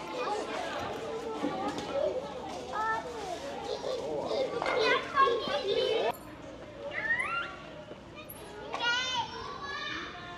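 Young children playing and chattering in a crowd, many small voices overlapping. About six seconds in the hubbub drops away, leaving a few single high-pitched child calls.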